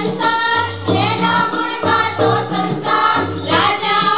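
Schoolgirls singing a Gujarati song together into a microphone, over low held accompaniment notes that change about once a second.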